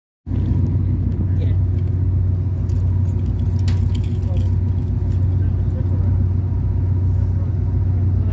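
Steady low drone of a ship's engines, heard from the open deck with wind rumbling on the microphone.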